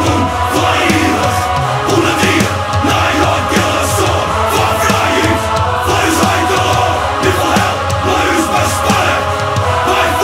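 Metal song with a group of voices chanting over guitars and drums.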